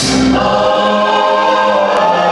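Live band music with a choir-like chorus of voices holding a sustained chord, loud and steady, picked up on a small handheld camera in the crowd.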